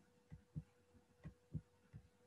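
Near silence with about five faint, soft low thumps of a stylus tapping and stroking on a tablet screen during handwriting, over a faint steady hum.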